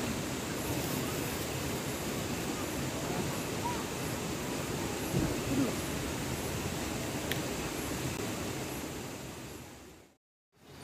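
Open-air campground background noise with faint distant voices. About five seconds in, a short low whoosh as a stacked teepee of split firewood catches in a sudden burst of flame. The sound fades away near the end.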